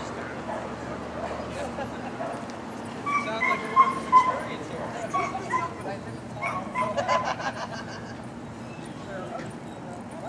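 A dog whining and yipping: a run of short, high cries between about three and eight seconds in, over crowd chatter.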